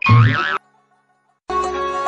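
A short comic sound effect with a swooping, wobbling pitch lasting about half a second, then a second of silence, after which background music with a folk-style melody starts again.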